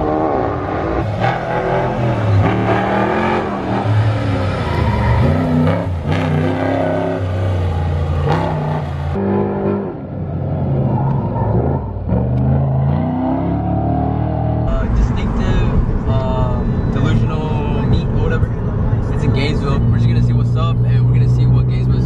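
Car engines on a drift course revving hard and falling off again and again, including a 1960s Chevrolet C10 pickup sliding sideways. The sound changes abruptly about 9 and 15 seconds in.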